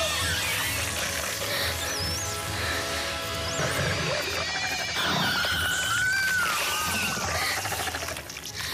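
Tense film score music with several short, high warbling squeals from the fairies as the Pale Man seizes and bites them.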